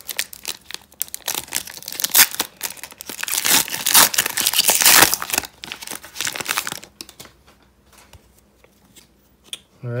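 Foil wrapper of a trading card pack crinkling and tearing open by hand, loudest around four to five seconds in. After about seven seconds it drops to faint rustles and clicks as the cards are handled.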